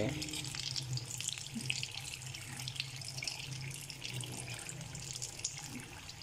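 Mini potato samosas deep-frying in hot oil in an iron karahi over a low flame: a steady, fine crackling sizzle, with a steady low hum underneath.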